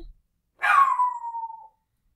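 A domestic pet's single high call, falling steadily in pitch over about a second.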